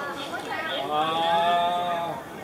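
A man's voice singing one long drawn-out note, starting about half a second in after a short vocal sound, slightly rising and then held level.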